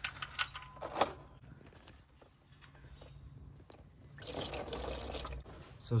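Old engine oil pouring from the opened drain hole of a 2017 Nissan Rogue's oil pan into a drain pan, a splashing stream that starts about four seconds in and lasts about a second. A few light clicks come in the first second as the drain plug is worked out by hand.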